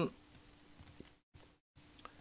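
A few faint, scattered clicks of a computer mouse, with quiet room tone between them.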